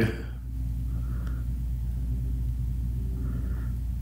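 A steady low hum, with two faint brief sounds, one about a second in and one near the end.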